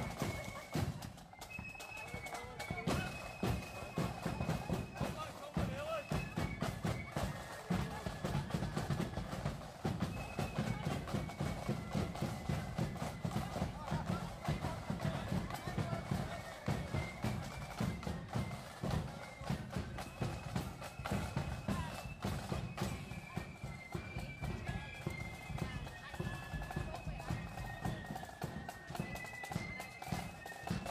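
A marching band playing: a high melody line that steps from note to note over a steady beat of drums.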